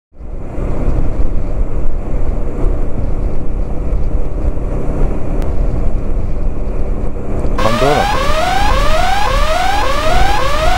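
Wind and engine noise on a camera riding a big scooter at speed. From about three-quarters of the way in, a repeating rising alarm-like tone, about two sweeps a second, sounds over it.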